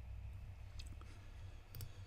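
A few faint computer mouse clicks, one about a second in and a quick pair near the end, over a low steady room hum.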